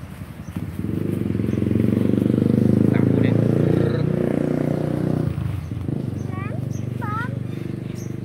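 A motor vehicle engine passing on a nearby road. It swells in over about two seconds, peaks around the middle and fades out about five seconds in.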